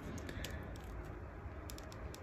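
Faint scattered clicks and taps of fingers handling a small plastic action figure, working its cape and a tabbed-in rifle piece into place.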